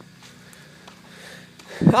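A pause in a man's talking with only low background noise, then he starts speaking again near the end.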